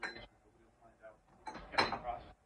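Metal clinks of hardware and tools being handled on a compound bow's cam and limb in a bow press: a sharp clink with a short ring at the start, then a louder rattling clatter with a ring near the end.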